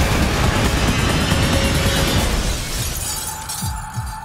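Movie trailer soundtrack: a loud blast of shattering and breaking debris mixed with music. It dies away about three seconds in, leaving a single held tone and a couple of low thuds.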